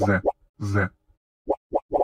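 A cartoon voice saying the name of the Russian letter З ("Ze") twice in a row, then two short clipped repeats of it near the end, as part of a rapid repetition of the letter's name.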